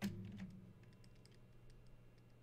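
Faint, scattered light ticks and taps of a stylus writing on a graphics tablet, after one sharper click at the start. A steady low electrical hum lies underneath.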